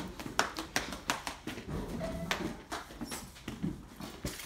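Quick running footsteps on a hard tiled floor, a string of irregular taps several times a second.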